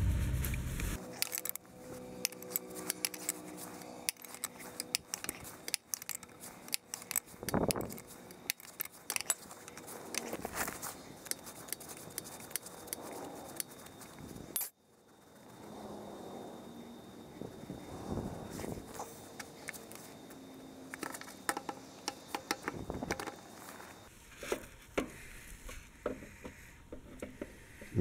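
Many quick, light metallic clicks and clinks of a steel wrench working the hitch pivot bolt loose under an old garden tractor, with parts knocking against the frame.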